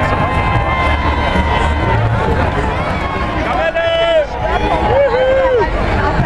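Carnival parade crowd: a dense hubbub of voices over a steady low rumble, with held musical tones fading out in the first second or so and two loud shouted calls about four and five seconds in.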